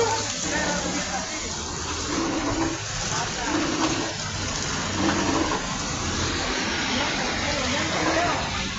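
Floodwater running down a city street in a steady rush, with faint voices in the background.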